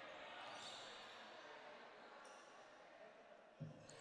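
Near silence in a gymnasium: faint room tone and distant voices, with a basketball bounced on the hardwood floor by the free-throw shooter before her shot.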